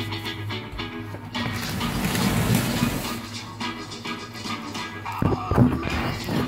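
Music playing from a television, with a few short knocks and rustles near the end.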